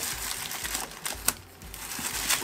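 Thin plastic garbage bag crinkling and rustling as an elastic band is stretched around it, with scattered small clicks and one sharper snap about a second in.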